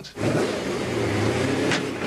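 McLaren F1's V12 engine running steadily as the car drives slowly along a street.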